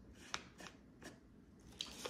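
A few faint, short clicks and scratches from a marker pen and a wooden dowel being handled against a foam board while a depth mark is made.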